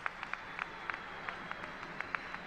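Scattered applause: a handful of people clapping unevenly, with single hand claps standing out.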